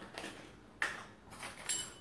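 Small glass spice jars and their lids being handled on a kitchen counter: light clicks and clinks, with one sharp click about a second in and a brief scraping rattle near the end.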